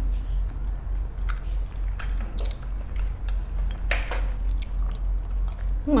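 Chewing a mouthful of shredded chicken salad, with scattered short wet mouth clicks and smacks over a steady low hum.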